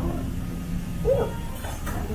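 Steady low hum of the room, with a short "ooh" from a person about a second in and a faint click near the end.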